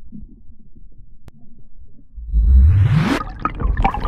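Muffled underwater rumble and water noise picked up by an iPhone X's microphone while the phone is submerged in a swimming pool. A little over two seconds in, a loud whoosh sweeps up steeply in pitch, followed by a few clicks.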